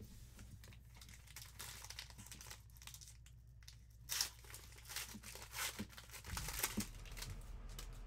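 Foil wrapper of a Panini Spectra football card pack crinkling and tearing as it is handled and ripped open. The sound is faint and scattered, with its loudest rustle about four seconds in.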